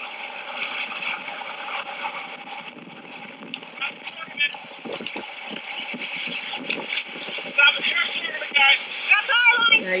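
Tornado wind rushing around a storm chaser's vehicle, with scattered knocks and rattles from debris and gusts. Raised voices come in over the wind near the end.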